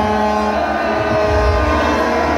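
Several plastic toy horns blown at once, holding steady overlapping tones at different pitches, over the noise of a large crowd.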